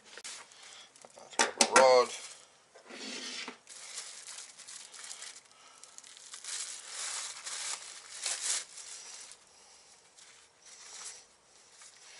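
Plastic bag and oiled grease-proof paper crinkling and rustling in irregular spells as a forged connecting rod is unwrapped from its packaging.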